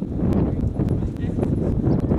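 Wind buffeting the camera microphone, a loud, uneven low rumble with scattered faint clicks through it.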